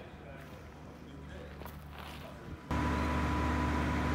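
Faint outdoor quiet with light footsteps, then, about two and a half seconds in, a sudden switch to a loud steady mechanical hum: a constant low drone with a high, even tone above it.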